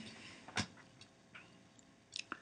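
A few faint, short clicks, roughly one every half second, the sharpest about half a second in.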